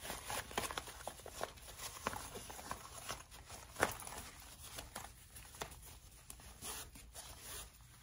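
Fabric rustling as hands fold and open a bag's fabric pocket panel, with scattered small clicks and one sharper click a little before the middle.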